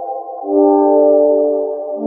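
Prophanity software synthesizer, an emulation of the Sequential Circuits Prophet-5, playing sustained polyphonic chords. A held chord fades out, and a new, lower chord swells in about half a second in and is held.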